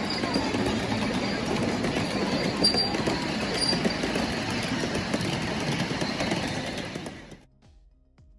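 7.5-inch gauge ride-on miniature train rolling past, its loaded cars rumbling and clattering along the track. The sound cuts off suddenly about seven seconds in, leaving faint music.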